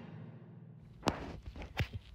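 Computer mouse-click sound effects: three sharp clicks, the first about a second in and two more close together near the end.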